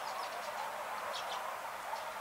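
Short, high bird chirps, a cluster near the start and another a little past a second in, over a steady background din.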